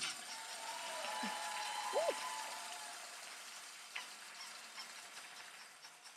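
Audience applause in a hall dying away, with a short voice sound about two seconds in.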